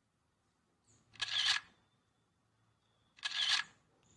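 Camera shutter sound, twice, about two seconds apart.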